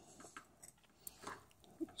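Faint snips and crunches of scissors cutting away black self-fusing rubber tape, a few short clicks.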